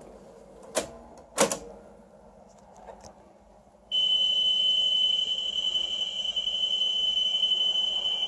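Two short mechanical clunks from the Sanyo Betamax VCR's controls as the alignment tape is started. About four seconds in, a steady 3 kHz test tone from the alignment tape begins and holds, heard through the TV's speaker alongside the colour-bar test signal.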